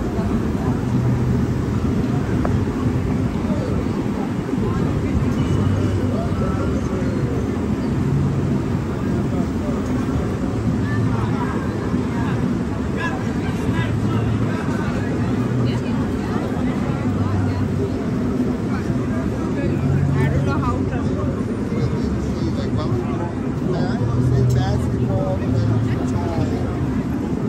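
Busy city street ambience: scattered chatter from passing pedestrians over a steady low rumble of traffic.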